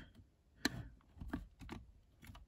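Plastic LEGO bricks clicking under the fingers as a fitted arch and wall section is handled and pressed down: one sharp click about two-thirds of a second in, then a few fainter ticks.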